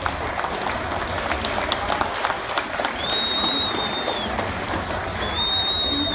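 An audience applauding, a dense steady patter of many hands clapping. A thin high steady tone sounds twice, each time for about a second, in the second half.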